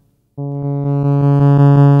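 Korg Volca Drum synth note: a sine wave driven hard through its overdrive, so it sounds buzzy and close to a square wave. It starts about a third of a second in, holds one pitch with a quick regular pulse of about seven a second, and grows a little louder and brighter.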